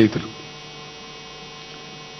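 Steady electrical mains hum, a constant buzz made of many even tones, picked up through the microphone and sound system; a man's last word trails off just at the start.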